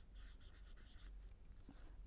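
Faint strokes of a marker pen writing on a board, a few short scratchy strokes in quick succession.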